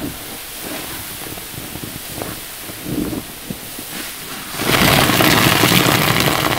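Sponge squeezed by hand in a basin of soapy detergent foam, giving soft wet squelches and crackling bubbles. About four and a half seconds in, a stream of water starts pouring into the foamy basin with a loud, steady splashing rush.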